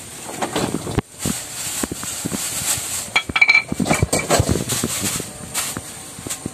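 Metal cooking pots and pans being handled and set down on a slatted bamboo floor: a run of irregular clanks and knocks, with a couple of short ringing clinks about three to four seconds in.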